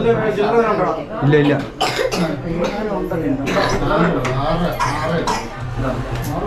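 Several voices talking over one another, with a cough.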